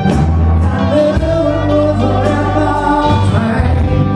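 Live rock band playing, with a lead singer holding sung notes over heavy bass and electric guitar.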